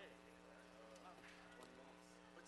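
Near silence: faint, distant voices of people talking in a room, over a steady low electrical hum.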